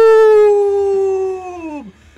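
A man's long, drawn-out celebratory yell, held on one high note that sinks slowly, then falls away and dies out about a second and a half in.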